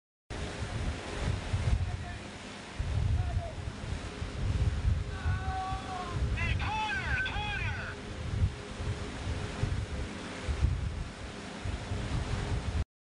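Rumbling noise on a film set's live sound, with a raised voice shouting out briefly about five seconds in.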